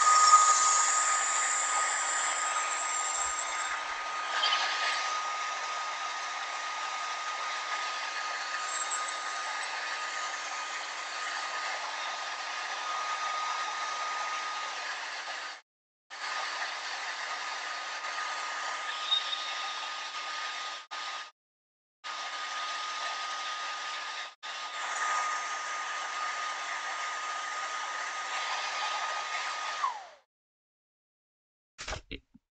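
Hair dryer blowing on a wet watercolour painting to dry it: a steady rush of air with a thin whine, loudest at first and easing over the first few seconds, cutting out briefly a few times.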